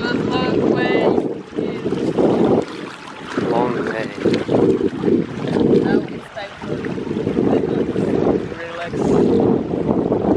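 Wind buffeting the microphone in gusts, a loud uneven rumble, over shallow water at the shoreline, with a few brief voice sounds.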